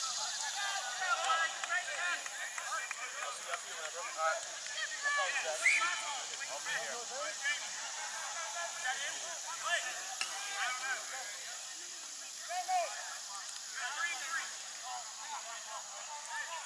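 Distant, overlapping voices of players and spectators calling and shouting across an open rugby pitch, none of it clear enough to make out, over a steady high hiss.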